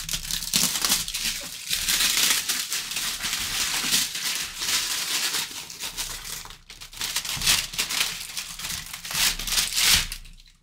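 Plastic shrink wrap being torn and crumpled off a box: dense crinkling with tearing, broken by a short pause a little past the middle.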